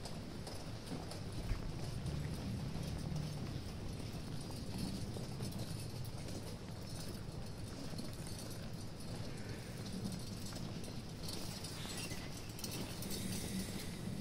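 Footsteps of robed procession members walking on a paved street, a steady low scuffing and tapping.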